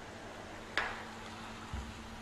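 Low room noise with a faint steady hum, one short soft noise a little under a second in, and a brief low thump near the end.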